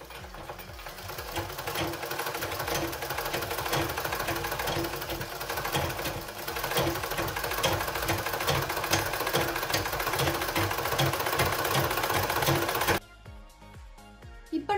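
Foot-treadle sewing machine with no motor, running as the treadle is pumped: the belt-driven handwheel and needle mechanism make a fast, even clatter. It picks up speed over the first couple of seconds and stops abruptly near the end.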